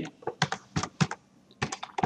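Computer keyboard keys being typed in a quick, uneven run of clicks, entering a short code.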